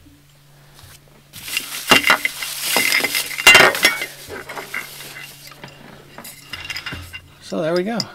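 Plastic wrapping crinkling and tearing as it is stripped off a water bottle, loudest and densest between about one and a half and four seconds in, then lighter handling clicks and clinks as the bottle is turned over.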